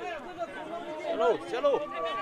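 Several people's voices calling out across a football pitch, overlapping one another during play. A steady high note comes in near the end.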